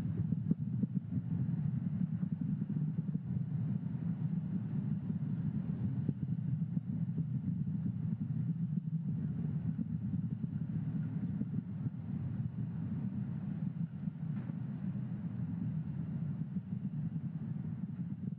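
Steady low rumble of the Falcon 9 first stage's nine Merlin 1D engines burning late in the first-stage burn, carried on the rocket's onboard audio. It eases slightly in loudness near the end.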